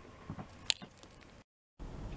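Faint handling noises, a few soft rustles and one sharp click a little before the middle, then the sound cuts out abruptly and a steady low background rumble begins near the end.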